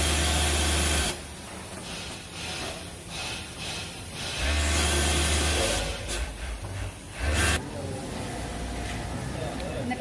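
Industrial overlock sewing machine stitching elastic waistband tape onto knit fabric, running in short bursts with a low motor hum and a hiss. One run lasts about a second at the start, another about a second near the middle, then a couple of shorter runs.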